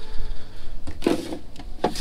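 A bass boat's carpeted livewell hatch lid being lifted and handled, with a couple of short knocks, one about a second in and one near the end.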